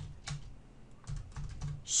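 Computer keyboard being typed on: a run of light, separate keystrokes at an uneven pace.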